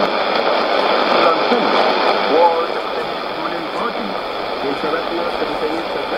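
A weak shortwave AM broadcast of a man's voice, the Voice of Nigeria English service on 15120 kHz, coming from a Sony ICF-2001D receiver's speaker. The voice sits under a steady hiss of static and is hard to make out. The sound is thin and narrow, with no deep bass and no top.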